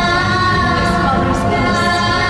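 Ensemble of voices singing held notes in chorus over musical accompaniment, from a stage musical.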